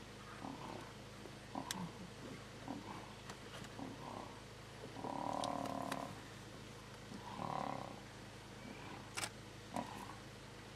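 Lions growling and snarling as they fight: short growls throughout, with two longer, louder growls, one about halfway through and one soon after. A few sharp clicks sound among them.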